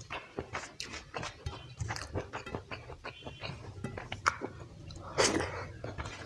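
Close-miked wet eating sounds: fingers squelching and pressing rice into curry gravy on a steel plate, mixed with mouth chewing and smacking. There are many small sticky clicks, and one louder, longer wet noise about five seconds in.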